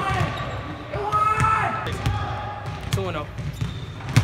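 Basketballs bouncing on a hardwood gym floor, several separate thuds, with players' voices calling across the court.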